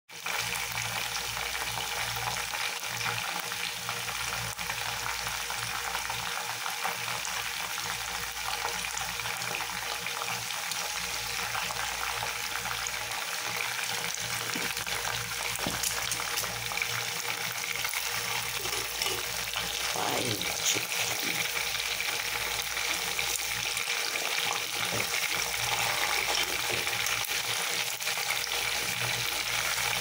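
Chicken pieces deep-frying in hot oil in a stainless steel pot, a steady sizzle that runs without a break.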